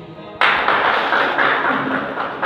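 A small group of people applauding by hand, breaking out suddenly about half a second in and carrying on steadily.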